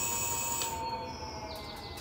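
Electric hub motor in a motorcycle's rear wheel whining as it spins, then winding down: about a second in the high part of the whine cuts out and the remaining tones slide lower and fade as the wheel slows. The builders suspect a flat battery.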